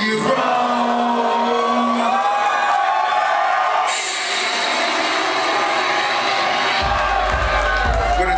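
Live hip-hop music playing through a club's PA, with the crowd cheering and whooping. A heavy, deep bass comes in near the end.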